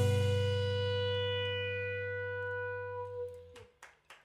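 A live band's final chord held and dying away: a low bass note under a sustained keyboard tone, fading slowly and stopping about three and a half seconds in. A couple of sharp clicks follow near the end.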